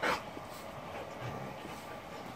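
A dog's single short, breathy snort right at the start, then only faint background sounds.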